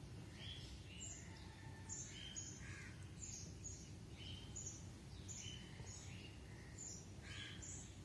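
Birds chirping faintly in the background, short high calls coming two or three a second, over a low steady background noise.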